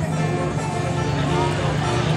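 Bluegrass string band playing live: banjo, acoustic guitar and upright bass, with steady plucked bass notes under the picking.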